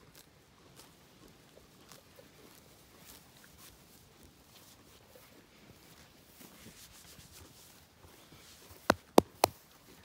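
Faint scattered tearing of grass as a pony crops it with her head down, then three sharp knocks in quick succession near the end.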